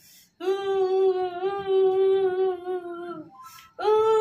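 A woman's voice holding long, nearly level notes, humming or singing: one note of about three seconds with a slight waver, a breath, then another note starting just before the end.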